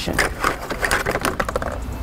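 Rapid, irregular light taps and clicks of a long pole knocking and scraping along a concrete store floor.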